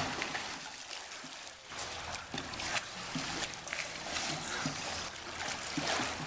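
Pool water splashing and sloshing as swimmers kick and swim through it, in irregular splashes.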